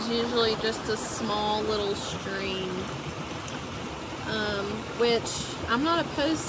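A swollen, flooding creek rushing steadily over its banks after heavy rain, with a voice heard over it at times.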